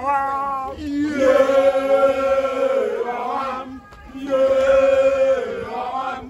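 A group of men chanting together in unison, in long held notes, with a short break about four seconds in.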